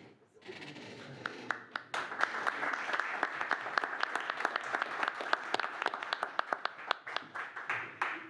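A room of people applauding: a round of hand clapping that builds about a second in, holds steady with many overlapping claps, and fades out near the end.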